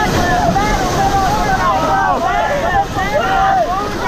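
Whitewater rapids rushing loudly around an inflatable raft, with wind buffeting the action-camera microphone, and several people yelling and whooping over the noise of the water.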